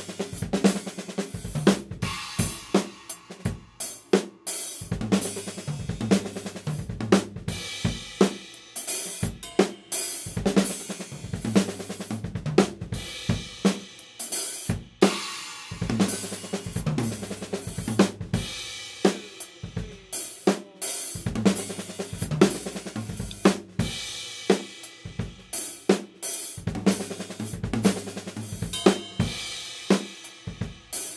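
Acoustic drum kit played continuously: a triplet-based lick with the double strokes kept on the snare drum and the single strokes moved around the toms, over bass drum and cymbals, with strong accents about once a second.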